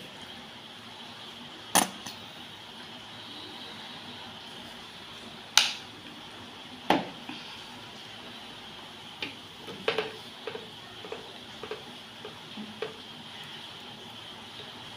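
A spoon clinking against a dish: three sharp clinks in the first seven seconds, the middle one loudest, then a run of lighter taps from about ten seconds in, over a faint steady hiss.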